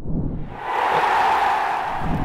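Video transition sound effect: a whoosh with a low rumble beneath it, swelling about half a second in and holding, then fading away.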